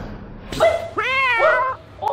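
Domestic cat in a wire cage yowling at a dog sniffing at the bars: a short sharp cry about half a second in, then a drawn-out yowl about a second long whose pitch rises and then falls, a defensive warning.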